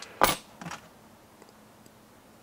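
One sharp clack about a quarter second in, then a fainter tap, as needle-nose pliers and a small plastic suspension link are handled on a hard benchtop.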